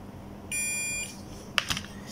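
Digital multimeter's continuity tester giving one short steady beep, about half a second long, as the probes bridge two connected points on the circuit board. The beep signals that the two points are joined. A few sharp clicks follow near the end.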